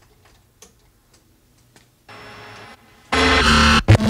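Glitchy sampled drum voice from a Eurorack modular synth: Erica Synths Sample Drum samples run through a Mutable Instruments Beads granular processor and a Noise Engineering Desmodus Versio. It starts with faint clicks, gives a short noisy burst about two seconds in, then comes in loud and dense about three seconds in.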